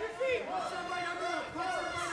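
Arena crowd noise with voices calling out, under a lull in the commentary.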